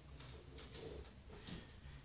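Faint squeaks and strokes of a marker drawing on a whiteboard: a few short strokes, the last a little louder, over a steady low room hum.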